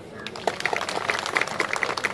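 Audience applauding at the close of a speech: many quick, irregular hand claps that build up in the first half second and keep going.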